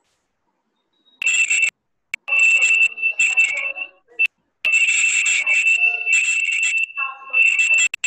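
A high-pitched electronic alarm tone that starts about a second in and sounds in uneven stretches with short breaks, loud over the room.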